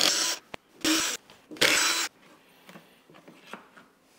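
Cordless drill-driver spinning out screws from the airbox cover of a Yamaha Ténéré 700, in three short bursts in the first two seconds, followed by faint rustling as the parts are handled.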